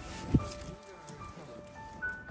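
Background music of single held notes that step from one pitch to another, with one sharp thump about a third of a second in.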